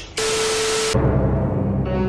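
An edited-in transition effect: a burst of static-like hiss with a steady low hum under it, under a second long, that cuts off abruptly. A deep, ominous music drone then starts and carries on.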